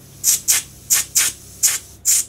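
Short hisses of compressed air from a hose-fed inflator gun pressed on an autoclave's valve, about six quick bursts in pairs, as the autoclave is pumped up to about one atmosphere of pressure.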